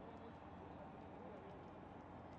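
Near silence: only faint, steady background noise.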